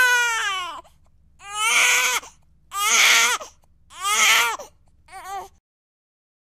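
A cartoon child crying: one long wail that falls in pitch, then three shorter wails about a second apart and a brief, fainter one near the end.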